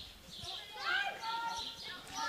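Distant high-pitched shouted calls from field hockey players on the pitch, a couple of rising calls about a second in.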